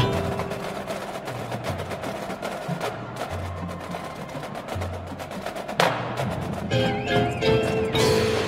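Marching band music, led by percussion: rapid tapping strokes from the drumline and front-ensemble mallets over long, low held bass notes. A loud hit comes about six seconds in, and the wind instruments come back in near the end.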